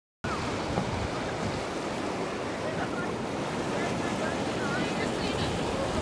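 Steady rush of a fast-flowing river channel, its current rippling and lapping at the sand edge, with some wind on the microphone.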